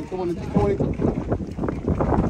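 Indistinct voices of people talking nearby, with wind rumbling on the microphone.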